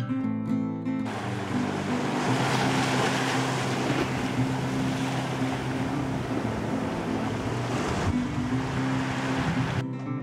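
Sea surf washing up a stone slipway, a steady rushing hiss that starts about a second in and cuts off just before the end, with guitar music playing underneath.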